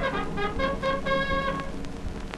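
Shellac 78 rpm gramophone record of a dance orchestra playing a foxtrot medley of American marches. Held brass notes break off near the end, leaving a quieter gap with sharp clicks of record surface noise.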